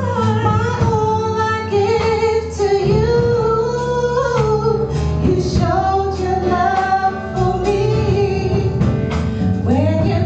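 Female vocal group singing a slow song in harmony into microphones, holding long notes, over a low instrumental accompaniment.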